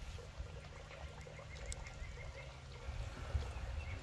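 Quiet outdoor ambience: a low rumble of wind on the microphone, with a short, faint run of quick chirps from a small animal about a second in.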